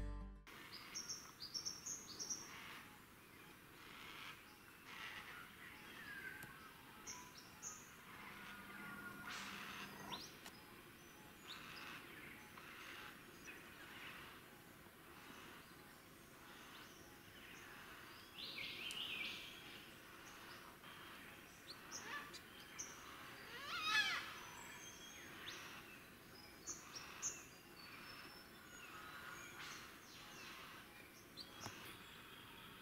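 Faint outdoor bush ambience with scattered short, high bird chirps and calls from several birds. One louder call about four-fifths of the way through sweeps down in pitch.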